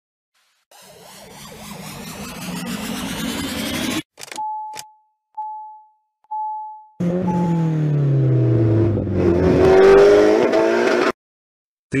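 Intro logo sound effects: a swell rising to a cut at about four seconds, four short beeps, then a loud engine-like sweep whose pitch shifts for about four seconds and cuts off suddenly.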